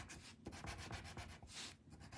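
White coloured pencil rubbing on a paper tile in quick, even back-and-forth strokes, faint, pausing briefly near the end.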